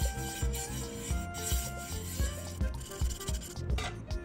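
A small paintbrush rubbing a thinned silicone compound onto a bare wooden board, a scratchy bristle scrubbing, under background music with a steady beat.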